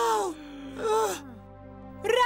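A character's voice giving two short groans that fall in pitch, the second about a second in, over faint background music.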